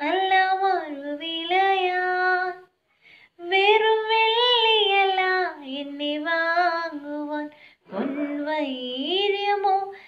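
A woman singing a Malayalam Christian hymn solo and unaccompanied, holding long notes with gliding pitch, pausing briefly for breath about three seconds in and again about eight seconds in.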